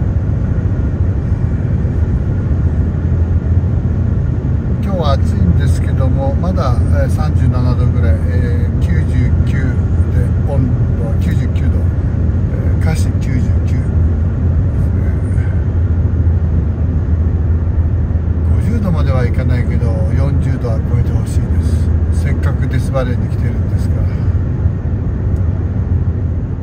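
Steady low rumble of road and engine noise inside a car cruising on a highway, with voices talking over it for stretches.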